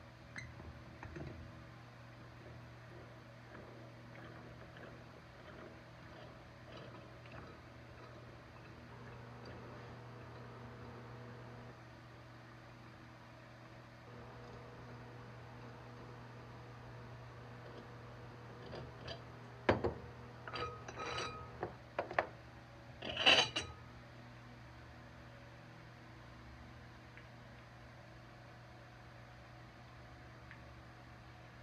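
Metal clinks and knocks from a mini tire changer and the wheel on it being handled. Sharp clinks come about two-thirds of the way through, ending in one louder ringing clink, over a low steady hum.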